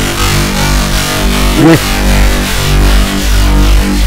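Moog Model 15 modular synthesizer holding a steady sustained chord, with a deep bass drone underneath.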